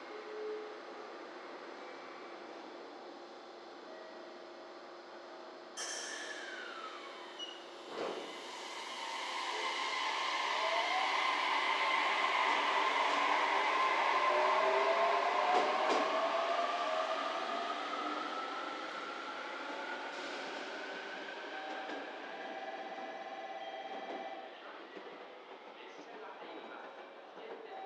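JR Kyushu 815 series electric train pulling out: after a sharp sound and a clunk, its motors' whine rises in pitch as it gathers speed, swells, then fades away.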